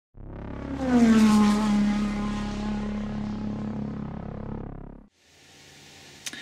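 Logo intro sound effect: a loud pitched tone that slides down about a second in, then holds steady and fades, ending abruptly about five seconds in.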